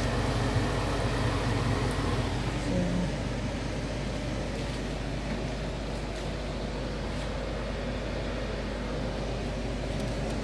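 A steady low mechanical hum with no distinct events, easing slightly after about three seconds.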